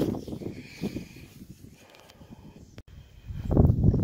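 Wind buffeting a phone's microphone in gusts, with rustling. A loud low rumble builds near the end, after a sudden brief dropout.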